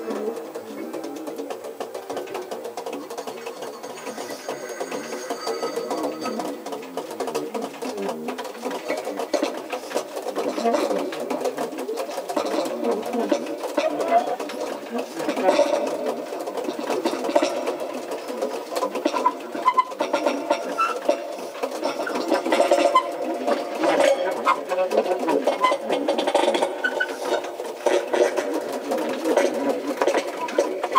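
Saxophones in free improvisation, playing a dense, fast-fluttering, buzzing texture that slowly grows louder, with other instruments and electronics mixed in.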